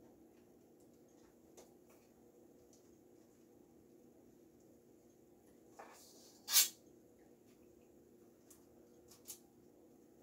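Quiet kitchen room tone with faint handling noises of cookie dough being scooped and shaped. About two-thirds of the way through comes one sharp clink from a stainless steel mixing bowl, and a fainter click follows near the end.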